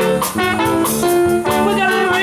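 Live band playing an instrumental passage between sung lines: guitar and drum kit keep a steady beat, with a trumpet line coming in near the end.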